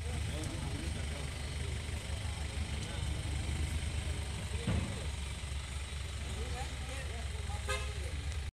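Pickup truck engine running as the truck moves off, with a steady low rumble and voices talking around it. A vehicle horn toots briefly about halfway through.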